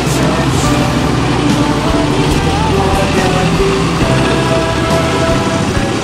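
Motorcycle engines running as motorcycles with sidecars ride past one after another, a steady mechanical sound.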